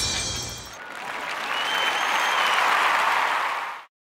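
Applause that rises about a second in as the last sung note dies away, then cuts off abruptly near the end.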